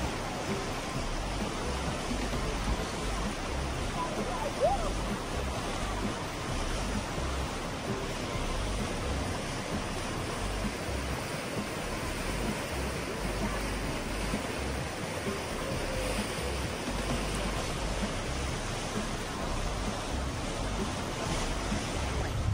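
The Animas River running high and muddy through rapids: a steady rushing of fast water. A single short sharp sound stands out about five seconds in.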